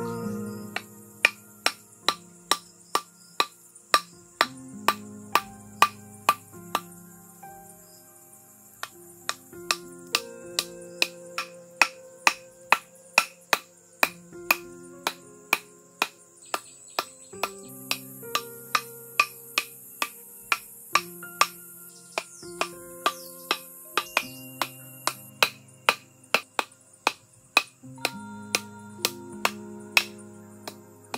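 A thick bamboo section used as a mallet knocks on the tops of bamboo stakes, driving them into the ground, about two hollow wooden strokes a second with a couple of short pauses. Soft background music with held notes plays underneath.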